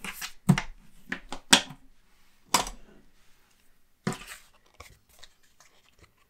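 Cardstock and double-sided tape being handled on a desk: a series of short, sharp paper rustles and tearing sounds, most of them in the first half.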